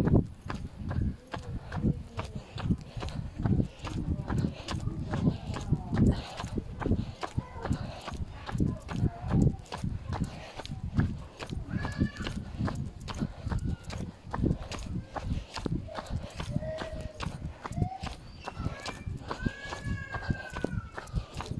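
Irregular knocks and thumps from a phone being jostled and rubbed against clothing as it is carried, with a few brief voices in the background near the middle and towards the end.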